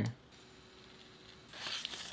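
A near-silent pause, then about a second and a half in, a short soft rustling scrape as a cardboard gum sleeve is slid off its plastic blister pack.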